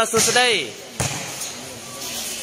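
A single sharp volleyball impact about a second in, followed by a short reverberant tail.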